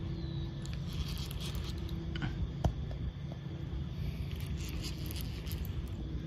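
Fishing reel being cranked as a hooked channel catfish is played on a bent rod, with scattered light clicks and one sharper click a little before the middle, over a steady low rumble.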